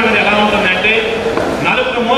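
Speech only: a man speaking continuously into a handheld microphone.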